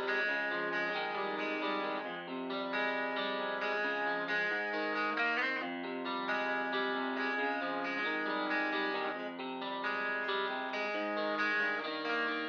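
Outro of a trap type beat in F minor at 135 BPM: a lone plucked, effects-processed guitar melody of overlapping notes, with no drums or bass.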